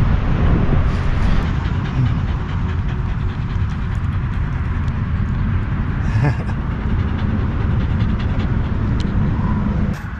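Wind buffeting the microphone outdoors, a loud, steady low rumble.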